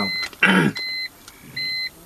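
A car's electronic warning chime beeping at a steady pace: short, high beeps of one pitch, a little more than one a second, three of them here.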